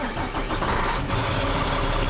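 Volvo VNM truck's diesel engine, heard from inside the cab, running steadily right after catching on a cold start without any pre-warming.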